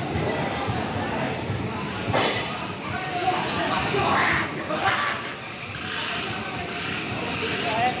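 Indian Railways passenger coaches rolling slowly past along the platform with a steady rumble of wheels on the rails, and a short, sharper noise about two seconds in. Voices are mixed in with it.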